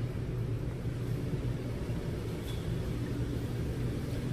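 Steady low hum of an SUV engine idling in an underground parking garage, the concrete space adding a reverberant rumble.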